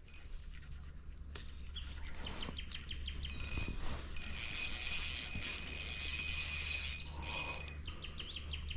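Spinning reel's drag buzzing as a large, hard-pulling trout takes line, from about three seconds in to about seven seconds. Birds chirp throughout.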